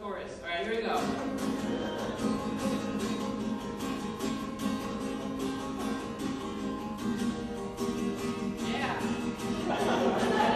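Acoustic guitar strummed in a steady rhythm. A man's voice is heard briefly at the start and again near the end.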